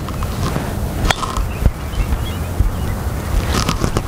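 A single sharp click about a second in, as a golf driver strikes a ball in a putting stroke, over a steady rumble of wind on the microphone.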